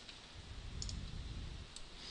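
A few faint computer mouse clicks, one a little before the middle and one near the end, as a Delete command is picked from a right-click menu, over low background rumble.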